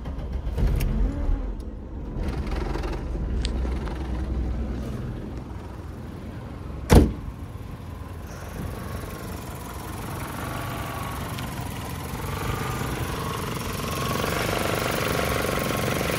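The Rabbit pickup's swapped-in VW ABA four-cylinder engine running with its throttle body unplugged, the only way it will run now. A single loud thump about seven seconds in, like a car door shutting. The engine gets louder near the end.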